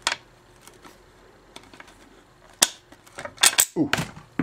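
Painted disc magnets clicking against one another as they are moved and snapped together: one click right at the start, another about two and a half seconds in, then a quick cluster of clicks near the end.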